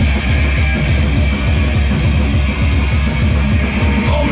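Hardcore punk band playing live at full volume: distorted electric guitar, bass and fast, dense drumming.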